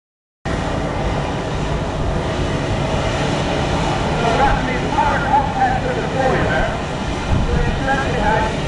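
Steam and boiler water rushing out of a traction engine's boiler where the clack valve has been torn off, a steady loud hiss with voices mixed in. The sound drops out briefly at the very start.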